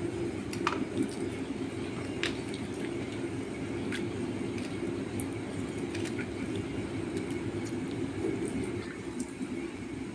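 Eating by hand: boiled rice squished and mixed in a steel bowl, with a few faint, light clicks, over a steady low hum.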